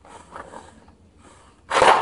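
A metal jar lid sliding faintly along a pine wooden board as a shuffleboard puck. Near the end comes a short, loud, breathy burst.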